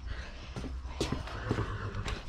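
A person's footsteps, a few soft scuffs and knocks, over a low steady rumble.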